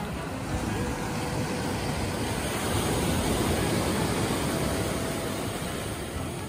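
Ocean surf breaking on a sandy beach: a steady rush that swells a little toward the middle, with wind rumbling on the microphone.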